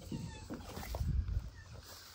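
A fox making short high whining squeals that glide in pitch, about a quarter-second in, followed by a low rumble near the middle, the loudest sound here.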